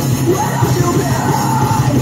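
Live rock band playing loud with electric guitars, bass and drums, a voice singing over it.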